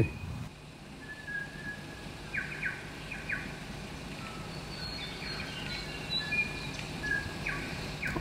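Birds chirping in short, scattered high notes, some in quick pairs, over a faint steady background noise.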